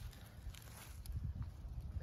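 Faint footsteps through dry leaf litter on a forest floor, over a low rumble.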